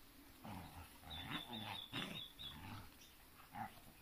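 Dog play-growling in several short, low bursts while wrestling over a toy, with a quick run of faint high peeps near the middle.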